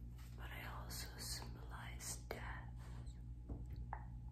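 A woman whispering breathily, with no pitched voice. A sharp click comes about two seconds in and a few faint mouth clicks come near the end.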